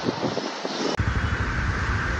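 Rain and traffic noise on a waterlogged city street; about a second in, the sound changes abruptly to a louder, steady low rumble with a hiss.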